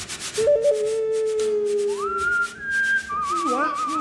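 Live western-film-style music: a small ocarina and a whistled tune with a wavering vibrato carry held melody notes over a fast, even rhythm of short scratchy percussion strokes, about five a second.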